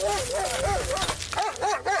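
Police K9 German shepherd barking rapidly and excitedly, several short high barks a second, with a brief pause about a second in.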